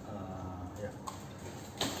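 Faint rustling and crinkling of a clear plastic packaging bag being handled, with a small click about a second in.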